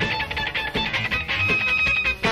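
Live jazz-rock band music, instrumental, with guitar prominent over a low bass pulse; a high note is held through the second half.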